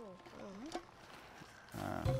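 A faint, wavering call that glides down and up in pitch during the first second, then loud music with a deep bass comes in near the end.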